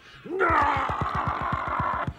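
A man imitating an ape's call: one loud, held cry that rises at the start and then holds, with a fast throbbing underneath of about nine beats a second.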